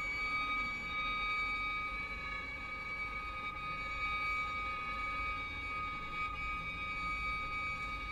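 Contemporary chamber ensemble of strings, percussion and electronics holding a cluster of high, steady tones that do not change in pitch, over a faint low rumble.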